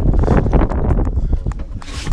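Wind buffeting the microphone, a low rumble that rises and falls in gusts.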